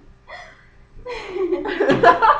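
People laughing: a short chuckle, then from about halfway a longer laughing voice that falls in pitch.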